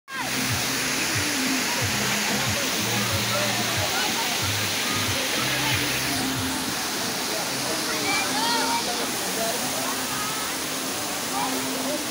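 Small waterfall pouring into a muddy pool: a steady rush of falling water, with voices calling faintly over it.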